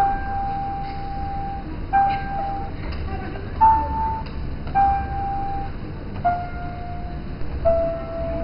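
Giant floor piano keyboard played by stepping on its keys, one slow note at a time: six single sustained tones about a second and a half apart, each held up to about a second, the pitch going up and then back down.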